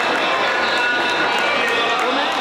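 Spectators shouting and cheering on swimmers, many voices calling at once in a steady, unbroken din.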